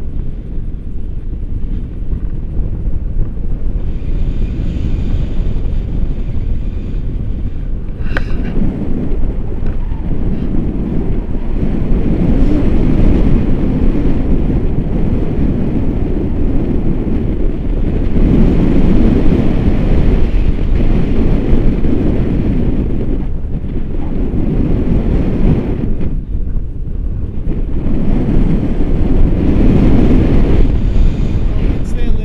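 Wind buffeting an action camera's microphone in paraglider flight: a loud low rumble that swells and eases every few seconds. There is a brief click about eight seconds in.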